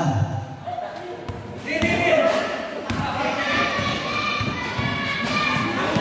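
A basketball thudding on the court during play, a few separate bounces, under voices of players and spectators that rise about two seconds in.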